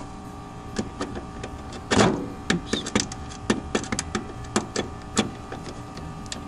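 Screwdriver tightening a breaker's lug screw down on a copper wire in an electrical panel: a run of sharp metal clicks and scrapes, with one louder knock about two seconds in, over a faint steady hum.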